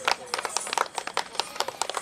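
Scattered hand clapping from a small crowd, irregular claps close together.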